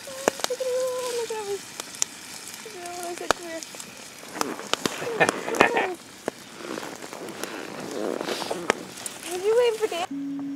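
Food frying over a campfire, with steady sharp crackles and ticks that thicken midway. Over it come three drawn-out, sing-song voice calls that rise and fall in pitch, near the start, about three seconds in and near the end, calling to the dog.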